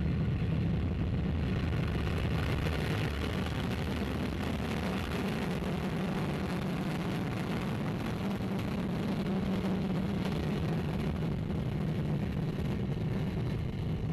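Soyuz rocket's first-stage engines, four strap-on boosters and the core stage burning together, running at full thrust through liftoff and the first seconds of climb: a loud, steady noise, heaviest in the low range, without a break.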